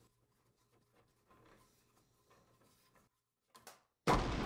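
Near silence, with a few faint, brief handling sounds as a motorcycle's stock mirror is unscrewed from its mount.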